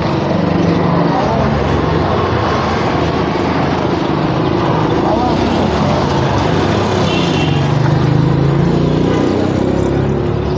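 Street traffic noise: the steady din of motor vehicles running close by with a low engine drone, faint voices mixed in, and a brief high tone about seven seconds in.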